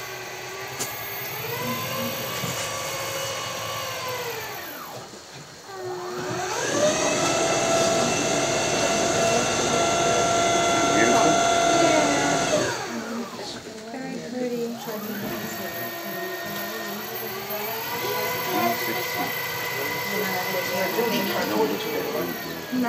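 Tour boat's motor running with a whine that climbs in pitch, holds steady and loud for several seconds, falls away, then climbs again near the end as the boat speeds up and slows down.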